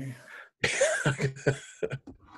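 A man coughing: one harsh cough about a third of the way in, followed by a few shorter ones.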